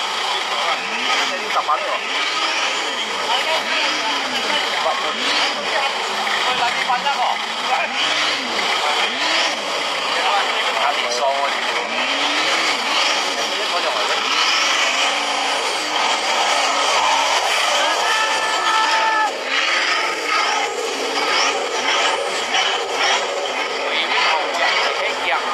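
An off-road vehicle's engine is revved again and again in short rising-and-falling bursts, about one every second, while it is winched out of a stuck position. Crowd chatter runs throughout, and a brief horn-like tone sounds about three quarters of the way through.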